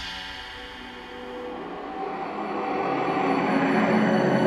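Tense background score: sustained drone tones with a swell that builds steadily louder over the last three seconds.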